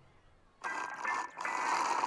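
Brief silence, then from about half a second in a steady rush of running, splashing water, with a short dip a little past the middle.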